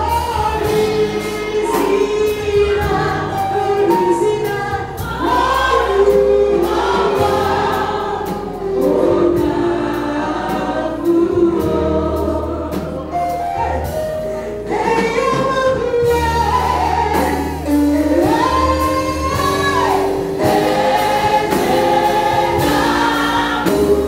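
A church congregation singing a gospel worship song together over live band accompaniment, with deep bass notes held under the voices and changing every few seconds.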